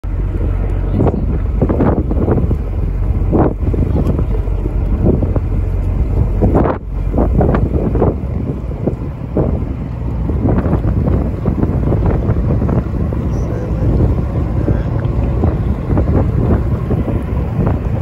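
Strong wind buffeting the microphone on an open boat at sea: a heavy low rumble with repeated gusty bursts, most frequent in the first half.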